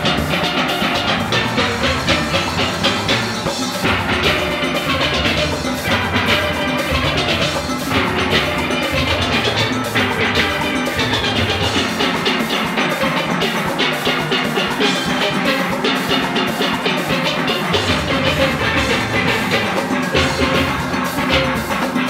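Small steel orchestra playing live: steelpans in several voices over bass pans, with drums keeping a steady, brisk rhythm. The bass drops out for several seconds midway and comes back near the end.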